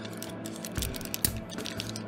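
Faint scattered clicks and taps of plastic parts as fingers work the knee joint of a Transformers Masterpiece MP-50 Tigatron figure, over quiet background music.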